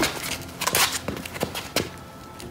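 A thump as two bodies meet chest to chest at the start, then shoes stepping and scuffing on pavement with jacket fabric rustling, loudest about a second in.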